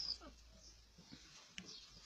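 Faint puppy whimpers: a short high squeak at the start, then a few soft, brief falling whines.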